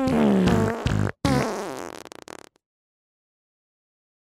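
Fart sounds played as comedy music: a long pitched one that falls in pitch, a short break, then a last one that sputters out about two and a half seconds in as the track ends.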